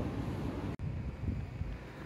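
Wind buffeting the microphone: a low, irregular rumble. An abrupt edit drop-out comes about three-quarters of a second in, then the rumble goes on.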